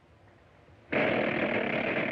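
Cartoon sound effect: a harsh, steady rasping buzz that starts suddenly about a second in and cuts off after about a second and a half.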